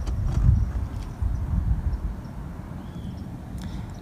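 Uneven low rumble on the microphone with a few faint clicks.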